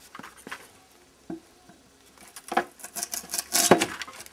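Hatchet blade scraping and prying crumbling old plywood off a wooden wardrobe panel: a few light knocks at first, then a run of scraping, crackling strokes in the second half, loudest near the end.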